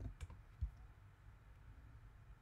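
A couple of faint computer keyboard keystrokes in the first second, over a low steady room hum.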